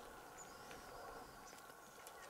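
Near silence: faint outdoor ambience.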